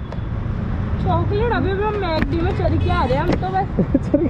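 A person talking, over a steady low background rumble.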